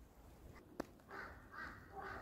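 Faint bird calls: two short, harsh calls in quick succession about a second in, a third starting at the end, after a single sharp click.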